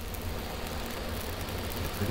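A steady hiss over a low hum, from running machinery.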